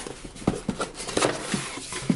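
A cardboard mailer box being handled and opened by hand: a string of irregular taps, scrapes and rustles of cardboard.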